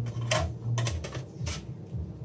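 Sharp metallic clicks and knocks, about three in two seconds, as a stainless-steel exhaust muffler shell is handled and worked by hand, over a steady low hum.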